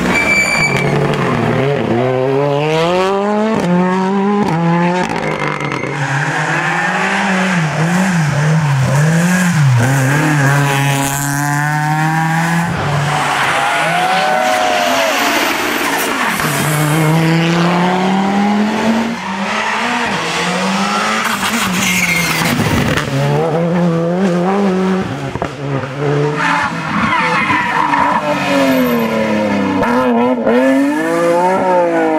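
Rally cars at speed, one after another, including a Ford Fiesta rally car and an Audi Quattro. The engines rev hard and drop back again and again through gear changes and corners, with some tyre noise.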